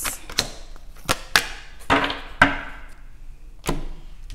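Tarot cards being shuffled hard and slapped down onto a table: a string of sharp snaps and slaps, about seven over four seconds, with brief rustling of cards between some of them.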